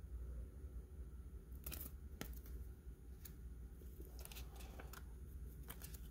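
Faint handling of trading cards: a few soft rustles and light clicks as cards in plastic sleeves are turned over and set aside, over a low steady hum.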